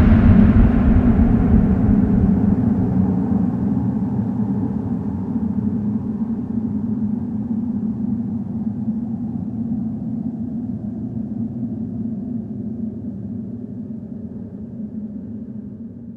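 Low rumbling drone, the long tail of a heavy impact hit, holding a few steady low tones and fading slowly until it is nearly gone at the end.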